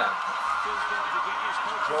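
A man snickering and chuckling, with talk going on in the background.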